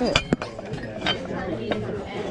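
Hard household items clinking and knocking as they are handled, with a sharp clink just after the start and a few lighter ones later, over a murmur of background voices.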